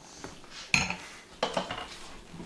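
Two clinking knocks of hard kitchen items being handled on a counter, the second about two-thirds of a second after the first, each with a brief ring.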